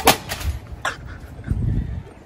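A sharp smack or crack right at the start, another sharp knock about a second in, and a couple of low thuds near the end.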